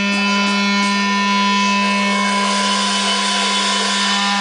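Amplified electric guitar holding one steady, buzzing drone through the amp, unchanging for the whole stretch, with no drums yet.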